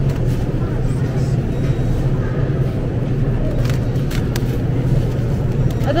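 Supermarket background noise: a steady low hum over a rumbling noise floor, with a few light clicks a little past halfway.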